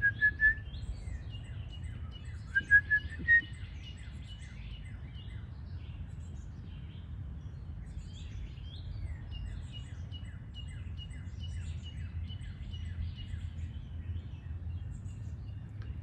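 Wild birds singing in the background: many short high chirps throughout, with a few louder rising whistled notes in the first few seconds. A steady low rumble runs underneath.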